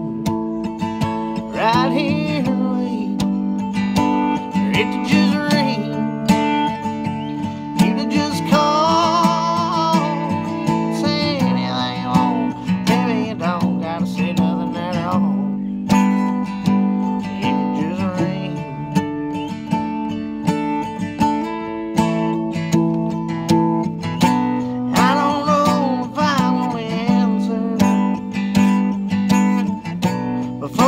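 Acoustic guitar strummed steadily in a country song, with a man's singing voice coming in over it at times.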